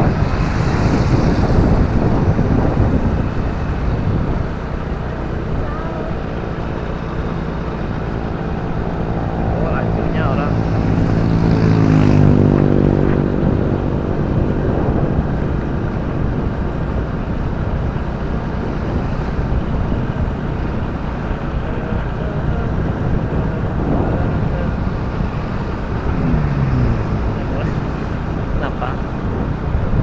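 Motorcycle ride with steady wind rush on the microphone over the bike's running engine. From about eight seconds in, an engine rises in pitch, is loudest about twelve seconds in, then falls away; a brief falling engine note comes near the end.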